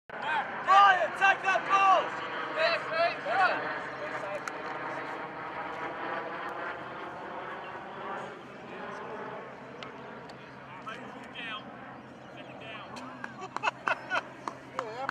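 Men shouting short calls across a gridiron field at the line of scrimmage, then a long steady droning hum with a few more calls and sharp clicks near the end.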